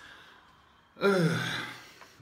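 A man's sigh about a second in: a loud voiced breath out that falls in pitch and fades away.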